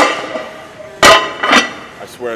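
Cast-iron 20 kg barbell plates clanking against the plates already on the bar as they are slid onto the sleeve. There are three metal clanks, each with a short ring; the loudest comes about a second in.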